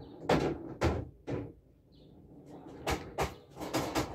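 Footsteps on a concrete floor, about two a second: three steps in the first second and a half, a short pause, then four more near the end.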